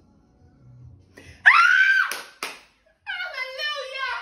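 A woman screams for joy: a loud, high shriek rising in pitch about a second and a half in, a brief second cry just after, then excited shouting of "Hallelujah!" near the end.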